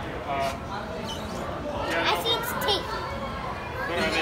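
Background chatter of visitors, children's voices among them, talking and calling out in a busy indoor public space.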